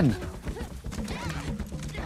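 Two people scrambling and grappling on a forest floor of dry leaves, with scuffing and knocking sounds and short grunts of effort, over a low film score.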